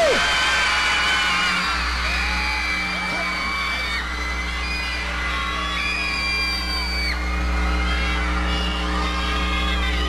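Arena crowd of fans screaming and cheering, with many long high-pitched shrieks, over a steady musical drone as the singer is introduced.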